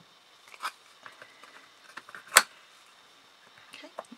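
Light taps and clicks of thin MDF craft pieces being handled, with one sharp knock a little past halfway as the MDF side panel is fitted onto the glued assembly.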